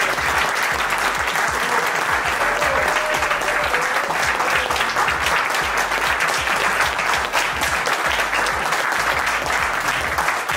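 A room full of people clapping together in sustained applause, dense and steady.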